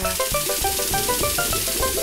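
Cartoon car-wash spray: a steady hiss of water jets spraying soapy water, over a light tune of short notes stepping up and down.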